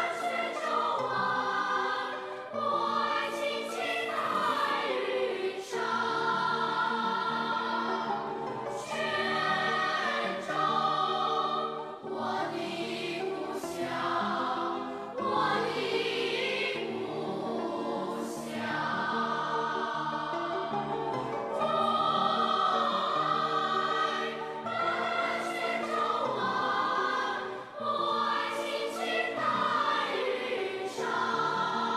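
Children's choir singing a song together with musical accompaniment.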